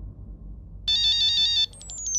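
Electronic phone ringtone starting abruptly about a second in: a chord of steady electronic tones for under a second, then a quick run of pips falling in pitch.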